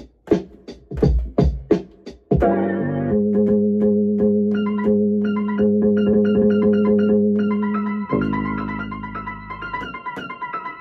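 Samples triggered from Akai MPC pads. For about two seconds there are sharp percussive hits with a deep thump. Then a sustained keyboard chord is held steady for about six seconds. It changes to a brighter chord near the end.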